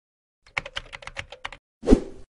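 Keyboard typing sound effect: a quick run of about ten key clicks in a little over a second, followed near the end by a single louder, deep thud.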